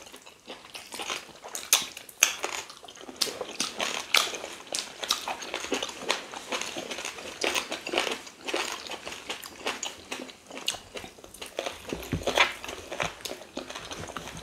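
Close-up mouth sounds of eating okra soup with meat and fufu by hand: a steady run of wet chewing, lip-smacking and finger-licking clicks.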